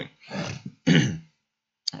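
A man clearing his throat: two short rasps in quick succession, then a pause.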